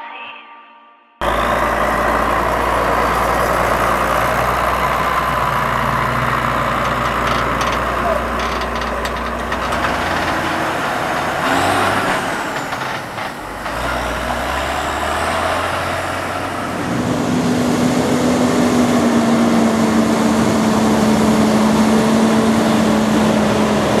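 Farm tractor engines running, heard loud and close with heavy noise over a low steady hum, after about a second of near silence at the start. From about 17 seconds a louder steady engine tone comes in.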